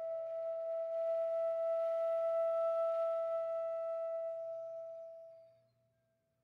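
Solo flute holding one long, nearly pure note with some breath in the tone, fading away to silence near the end.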